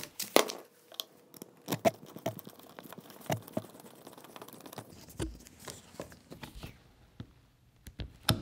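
Hand screwdriver turning a small Phillips screw to fasten a steel belt clip to a cordless impact driver's plastic housing: irregular quiet clicks and scrapes of the bit, screw and clip, thinning out near the end.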